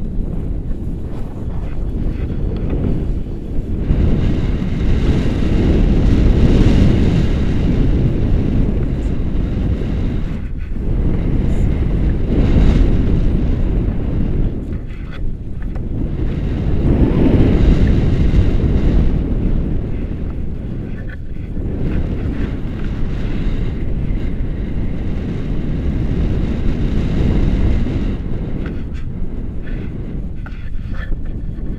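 Loud wind noise as the air rushes over an action camera's microphone while a tandem paraglider launches and flies. It swells and eases in surges every few seconds.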